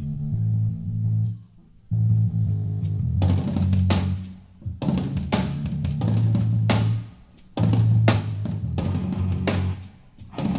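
Live rock band playing: amplified guitars on a low, stop-start riff, with the drum kit joining about three seconds in. The band cuts out briefly between phrases, three times.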